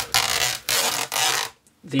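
Hand sliding and brushing across the underside of a laptop's base: three quick rubbing swishes over about a second and a half, then a brief stop.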